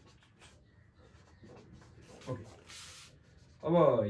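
Marker pen scratching across a whiteboard as equations are written, in short faint strokes with one longer, louder stroke shortly before the three-second mark.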